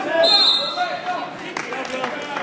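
Spectators' voices shouting in a gym during a wrestling takedown, with a brief high squeak about a quarter second in and a few sharp knocks, like bodies hitting the mat, near the end.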